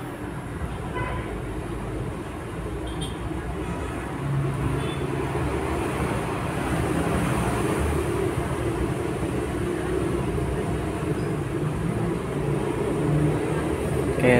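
Steady low background rumble and hum, a little louder from about four seconds in.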